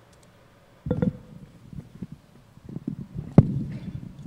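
Handling noise on a microphone as it is picked up and moved: low thumps and bumps starting about a second in, then a sharp knock near the end, the loudest sound, followed by a low rumble.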